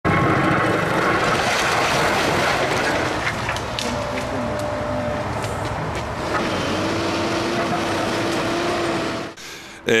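A tracked excavator with a hydraulic breaker demolishing a concrete structure: a steady dense din of diesel engine and machinery, with scattered sharp knocks of breaking concrete. It drops away shortly before the end.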